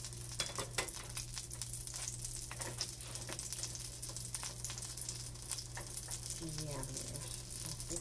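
Pancake batter frying in hot oil in a nonstick pan: steady sizzling with many irregular crackles and pops.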